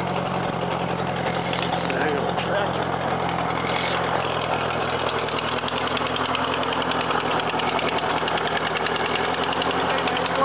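1941 Ford tractor's four-cylinder flathead engine running steadily at an even, unchanging speed.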